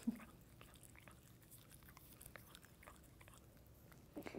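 Near silence: faint room tone with a few scattered small, soft clicks and one short low thump just after the start.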